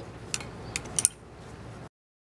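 A few light clicks and taps of small objects being handled on a worktable over a low background hush; the sound cuts off abruptly near the end.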